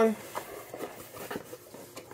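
Cardboard boxes being handled, with a few faint taps and scrapes as a boxed Funko Pop figure is drawn out of its cardboard shipping case.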